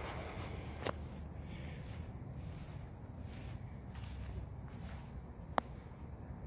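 Outdoor insect chorus: a steady high-pitched trill that pulses about twice a second, over a low rumble, with a sharp click about a second in and another near the end.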